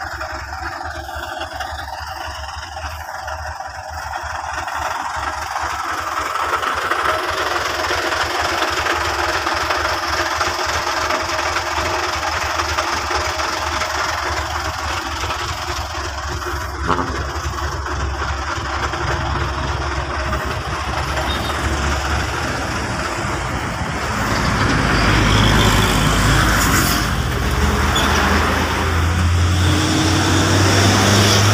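Heavy truck's engine running steadily nearby, with one sharp knock partway through. The low hum grows louder in the last several seconds.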